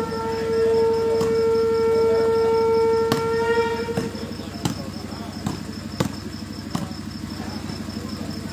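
A long blown horn note, steady in pitch with several overtones, holds for the first four seconds and then cuts off. Sharp slaps of a volleyball being hit break through it and go on after it, over a steady high pulsing chirr.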